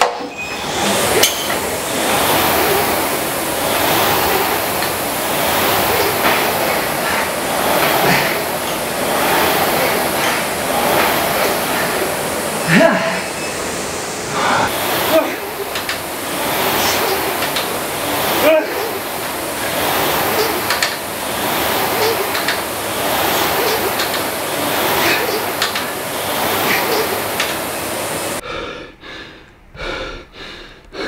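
Air rowing machines worked at full effort: the fan flywheel whooshing steadily with each stroke, with clicks and clinks from the handle, chain and seat. The noise drops away near the end.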